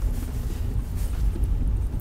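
Car cabin noise while driving slowly: a steady low rumble of engine and tyres heard from inside the car.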